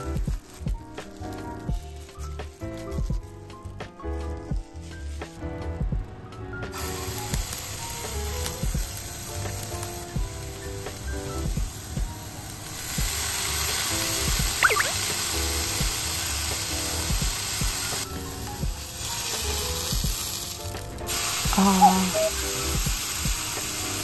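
Background music, and from about seven seconds in a frying pan sizzling as a hamburger patty of Sendai beef and pork mince cooks. The sizzling grows louder about halfway through.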